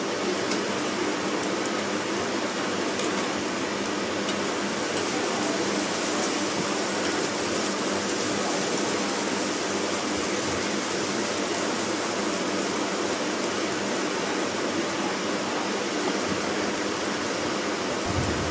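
Onions and garlic sizzling in hot oil in an aluminium karahi: a steady hiss with a couple of faint ticks.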